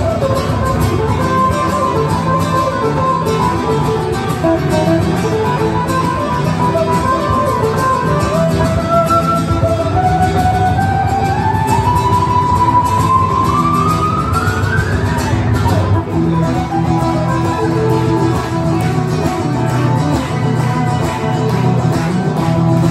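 Live acoustic guitar music from a trio of guitarists: a busy strummed and picked rhythm under a sustained lead line. The lead line climbs steadily in pitch from about ten seconds in, peaking around fifteen seconds.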